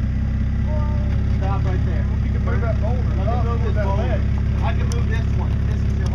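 Jeep Cherokee XJ engine idling steadily while the Jeep is held stopped on the rocks.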